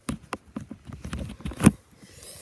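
Handling noise from toy figures being grabbed and moved on carpet: a quick, uneven run of sharp clicks and knocks, with one loud thump near the end.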